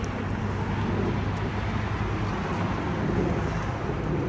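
Steady low rumble of road traffic, a constant hum with an even wash of outdoor noise over it.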